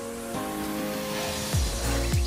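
Electronic background music with held synth chords. A deep bass-drum beat comes in about a second and a half in.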